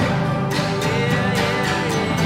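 A band playing a song live, with guitar over a steady beat that strikes about twice a second.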